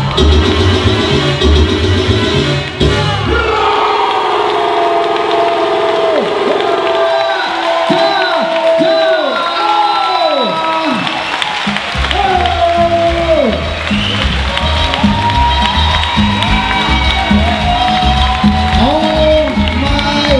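Salsa music whose beat drops out a few seconds in, while an audience cheers and whoops at the end of a dance routine; the beat comes back about twelve seconds in, under the continuing cheers.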